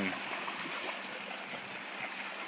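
Steady wash of shallow water: small waves lapping at a sandy shoreline and dogs splashing as they wade through the shallows.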